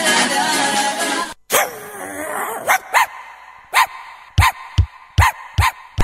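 A dog barking in short, sharp barks, seven or eight of them at uneven spacing: a recorded sound effect opening a dog-grooming advert. Before the barks, music cuts off about a second in.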